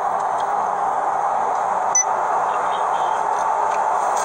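Steady road and wind noise inside a pickup truck's cab cruising at about 60 mph, with one brief short tick about halfway through.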